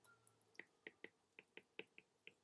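Near silence with a run of faint, quick ticks starting about half a second in: a stylus tapping on a tablet screen while handwriting.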